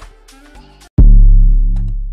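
Amapiano beat playing back, with a loud, deep 808 bass note that starts suddenly about a second in and slowly fades, after a quieter second of the track.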